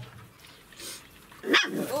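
A German Shepherd puppy gives one short, loud bark near the end. It is guarding the food and the nest.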